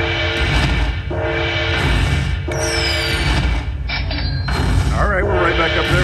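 Dragon Link slot machine's bonus-collect sounds: a short chiming musical phrase repeating about every second and a half as each coin value of the finished hold-and-spin bonus is added to the win meter, with a falling swish midway.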